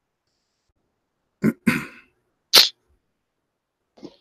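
A man coughing: a short bout of two or three coughs starting about a second and a half in, over within about a second. The rest is silent.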